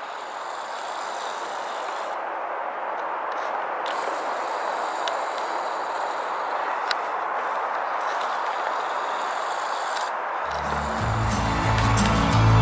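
A steady rushing hiss that slowly swells in loudness, then background music with a deep bass line comes in near the end.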